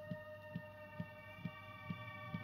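Electrohome Apollo 862 radio receiving the AM band through its own speaker: several held whistling tones that drift slightly in pitch, over a short low thump repeating about twice a second.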